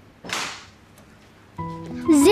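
A single sharp whoosh that fades within half a second, followed about a second and a half in by soft music starting on sustained notes.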